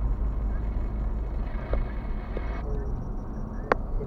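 Steady low rumble of a car's engine and tyres heard from inside the cabin while driving, with a single sharp click near the end.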